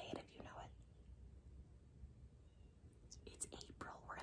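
Near silence: room tone with a faint low hum, with a few soft spoken words at the start and again near the end.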